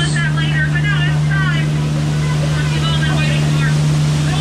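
Steady low hum of a Jungle Cruise tour boat's motor running under way, with water noise around it.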